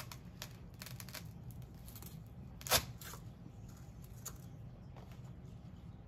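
Light rustling and small clicks of artificial flower stems and dry moss being handled as a heart pick is pushed into a styrofoam-filled box arrangement, with one sharp crackle a little before halfway through. A steady low hum runs underneath.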